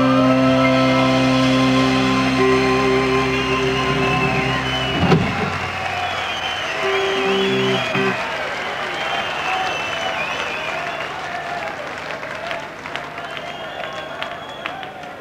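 Rock band's closing chord on piano and guitar held and ringing, cut off with a thump about five seconds in, then a brief last chord. Audience cheering and applauding follows, slowly fading.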